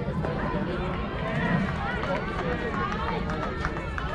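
Several high voices, likely young players, calling and chattering over one another and indistinct, over a steady low rumble.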